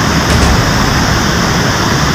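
Muddy mountain river in flood, its fast water rushing with a loud, steady noise.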